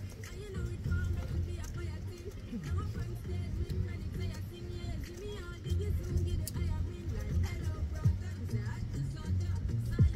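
Background music with a repeating bass line and a simple melody.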